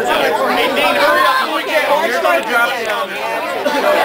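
Crowd of people chattering, many voices talking over one another at once.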